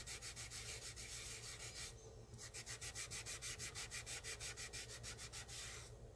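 An acetone-soaked cleanup pad rubbed quickly back and forth to wipe stray polish from around a nail. The faint scrubbing strokes come about eight a second, with a short pause about two seconds in.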